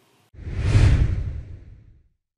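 Whoosh sound effect of a logo sting, with a deep low rumble under a hiss: it starts suddenly about a third of a second in, swells, then fades away over about a second and a half.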